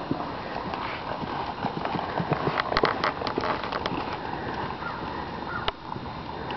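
Hoofbeats of a ridden gelding moving at a slow gait over dirt arena footing, as a series of soft clicks and thuds that is loudest about halfway through, with one sharper click shortly before the end.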